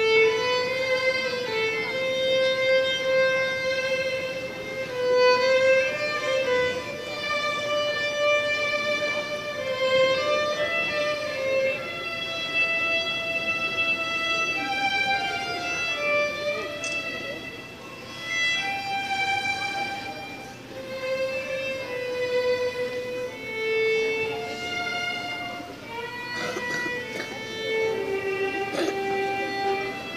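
Solo violin playing a slow melody of long held notes.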